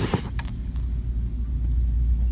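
Steady low background rumble, with two light clicks in the first half-second.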